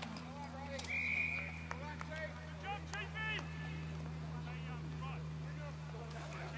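Distant shouts and calls from players on an Australian rules football field, with a single short, steady whistle blast about a second in, typical of the umpire's whistle after a tackle. A steady low hum runs underneath.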